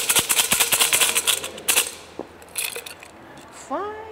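A cup of numbered Chinese fortune sticks shaken hard, the sticks rattling fast against each other and the cup for about two seconds, then a second short shake.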